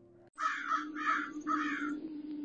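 A crow cawing three times, about half a second apart, over a low steady drone.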